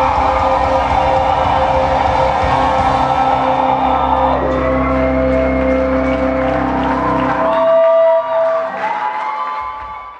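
Live rock band holding a sustained closing chord through a hall PA; the bass and low end cut off about three-quarters of the way in, leaving crowd whoops and cheers that fade out at the end.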